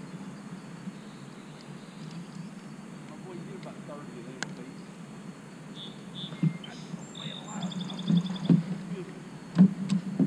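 A few low knocks and thumps against a kayak while a smallmouth bass is landed and handled at the side of the boat. They are sharpest near the end. A few short high chirps and a quick run of ticks sound in the middle.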